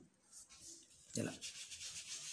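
Fingertips rubbing and sliding on a small slip of paper while handling kumkum powder: a faint, soft scratchy rubbing that begins about a second in.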